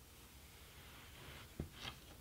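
Faint rustle of yarn being handled and drawn through the warp of a rigid heddle loom, with one short knock about a second and a half in.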